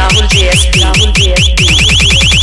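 Loud electronic dance music played through a homemade mini DJ speaker rig: deep bass kicks that drop in pitch, about four a second, with a repeating rising high synth tone. The beat quickens into a fast roll near the end.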